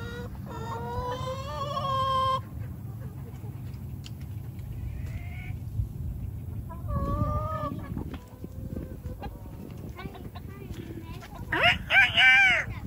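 A rooster crowing in one long call of about two seconds, starting about half a second in, with hens clucking around it. Further loud calls follow around seven seconds in and again near the end.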